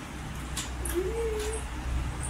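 A domestic cat meowing once, a single drawn-out meow about a second in, over a low steady hum.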